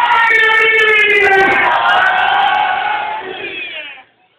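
Voices chanting together in long drawn-out notes that slide in pitch, fading out near the end.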